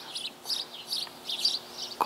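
A small songbird chirping: a quick run of short, high chirps, about three a second.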